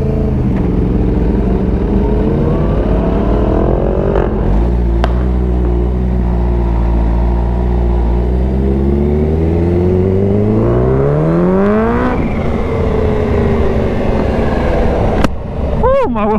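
Kawasaki Ninja H2's supercharged inline-four engine pulling away under throttle: the revs climb quickly about four seconds in, then rise slowly and steadily in a low gear for several seconds, break at a gear change about twelve seconds in, and fall away as the throttle eases. Two sharp clicks stand out, about five seconds in and near the end.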